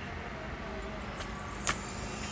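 Faint steady background hiss broken by two short, sharp clicks in the second half, the louder one near the end.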